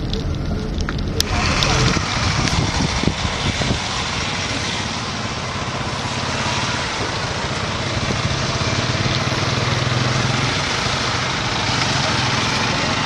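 Vehicle-mounted motorized disinfectant sprayer running: a steady engine under a loud hiss of spray that starts about a second in.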